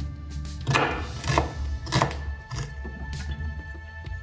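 Chef's knife chopping onion on a wooden cutting board: a few sharp strikes, mostly in the first two seconds and thinning out after, over soft background music.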